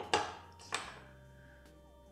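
Two sharp clicks about half a second apart, each with a short fading ring, as small hard plastic charging accessories are set down on a tabletop.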